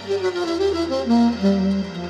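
Saxophone playing a melodic run of short held notes over electronic keyboard accompaniment with a steady bass line.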